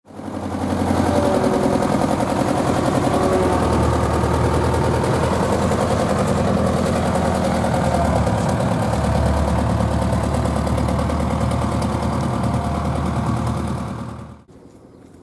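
Engine of a pneumatic-tyred road roller running steadily with a rapid, even knocking. It fades in at the start and dies away near the end.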